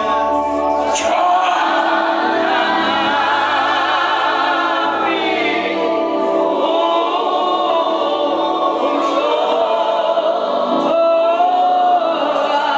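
A group of voices singing a gospel song together, with long held notes.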